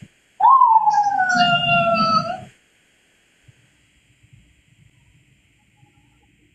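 A woman's long, high-pitched vocal cry that rises briefly and then slides slowly down, lasting about two seconds, followed by near silence.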